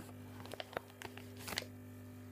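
Faint handling noise: a few short clicks and rustles as a hand reaches for the recording phone, over a low steady hum.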